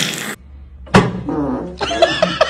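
A sharp crack about a second in as a chiropractor adjusts a man lying face down on a chiropractic table, followed by the man's high-pitched cry.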